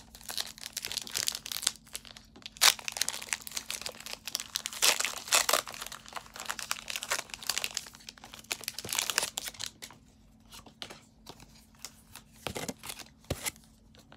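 Foil wrapper of a Pokémon Battle Styles booster pack crinkling and tearing as it is opened, dense for about the first ten seconds, then quieter handling with a few light clicks near the end.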